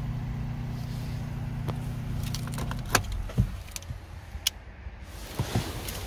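Audi A1's 1.0 TFSI three-cylinder engine idling steadily, heard from inside the cabin, then switched off with a click about three seconds in. A few light clicks and knocks follow as the driver's door is opened.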